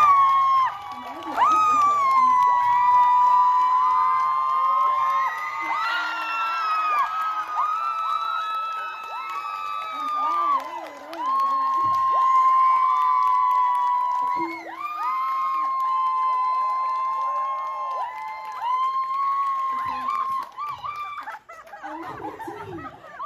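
Concert crowd cheering and screaming at length, many high voices held for a second or more at a time, dying down near the end.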